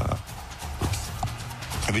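A pause in studio talk: room tone with a steady low hum and a few faint clicks. A man's voice starts again near the end.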